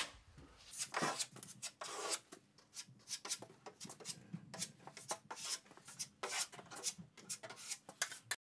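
A 3-inch steel putty knife scraping drywall joint compound over screw heads on drywall, in many short, quick strokes, filling and flushing the screw dimples.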